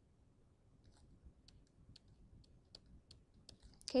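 Faint, irregular clicks of a stylus tapping and writing on a tablet screen, coming more often in the second half.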